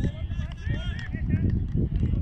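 Faint, distant voices over a low, uneven rumble of wind buffeting the phone microphone.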